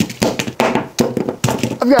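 Plastic-wrapped blocks of cheese set down one after another on a wooden butcher-block table: a quick series of taps and thunks.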